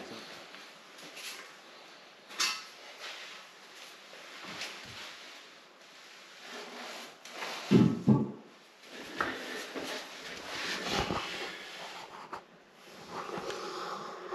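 Porcelain toilet bowl being set down and shifted on a bare concrete floor: scattered scrapes and knocks, with one heavier thump about eight seconds in.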